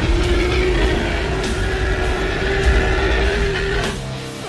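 A giant monster's roar sound effect: one long, steady held cry over a deep rumble, fading out near the end.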